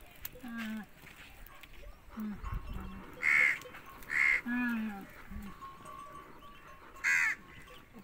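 Crows cawing: three short, loud calls a few seconds apart, around the middle and near the end. Lower drawn-out animal calls come in between.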